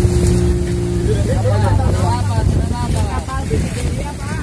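Small boat's engine running steadily as the boat moves through the water, with a steady tone in the hum that drops out about a second in; voices talk over it.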